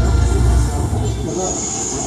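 The closing bars of a national anthem die away. About one and a half seconds in, a thin, steady high-pitched whine starts and holds.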